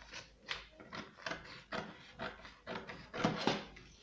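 Scissors snipping through a paper pattern, a run of short cuts about two a second with paper rustling, the loudest cuts a little after three seconds in.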